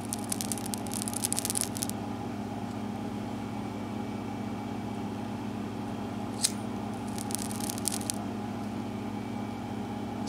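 A small dab of old glue on a hobby-knife blade crackles as it burns in a lighter flame, a fine crackle for about the first two seconds. A short second crackle comes about seven seconds in and a single tick just before it, over a steady low hum in the room.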